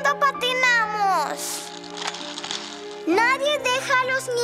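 Cartoon soundtrack music: a child's voice in long, drawn-out gliding notes over held instrumental tones. In the middle the voice stops and a hissing swish is heard.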